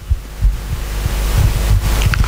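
Handling noise on a handheld microphone: irregular low thumps and rumble under a steady hiss, as the hands shift on the mic body between phrases.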